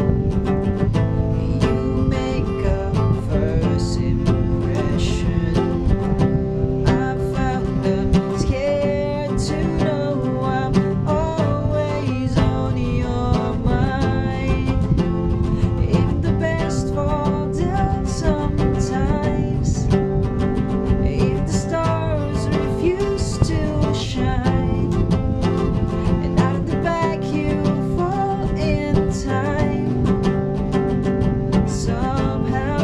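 Steel-string acoustic guitar playing chords in a steady, even rhythm.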